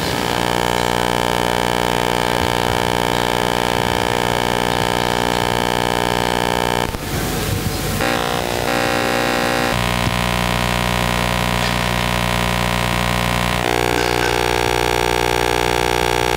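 Sustained electronic drone from the hall's loudspeakers: a steady chord of many tones that shifts to a new chord a few times, with a short burst of noise about seven seconds in.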